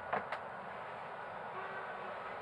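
Steady outdoor city background noise, with two short clicks close together a quarter of a second in and a faint thin tone near the end.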